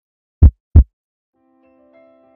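Heartbeat sound effect: one lub-dub pair of deep thumps about half a second in, a third of a second apart. Faint sustained music tones fade in about a second later.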